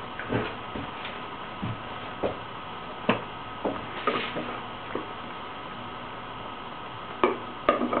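Scattered light clicks and knocks of small items being picked up and handled, over a steady faint hum. A couple of quiet seconds, then a quick cluster of clicks near the end.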